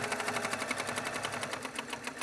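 Baby Lock Accomplish 2 sewing machine stitching at speed in free-motion quilting, its needle going up and down in a rapid, even rhythm.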